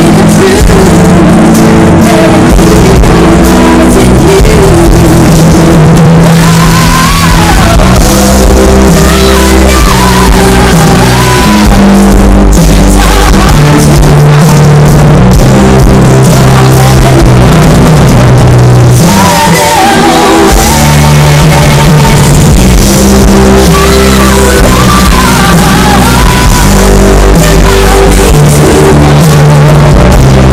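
Live rock band playing loudly, with a woman singing lead over electric guitar, bass, drums and keyboards.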